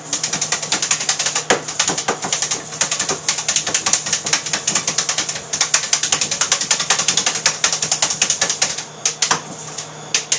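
Brass lab sieve shaken and tapped rapidly by hand to sift flour and separate beetle larvae, rattling in quick sharp strokes about seven or eight a second, with a brief pause near the end.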